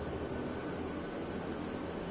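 Steady low background hiss and hum with no distinct events; the drill is not running.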